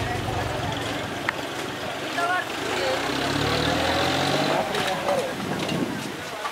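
A motor vehicle's engine running, its hum growing stronger about three seconds in, with people's voices over it.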